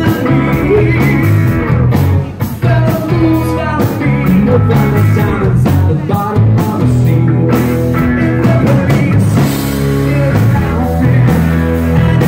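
Live rock band playing: a man singing lead over two electric guitars, bass and a drum kit, loud and steady.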